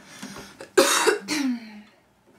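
A young woman coughing: a harsh cough about a second in, followed quickly by a second shorter one that trails off in a falling voiced sound.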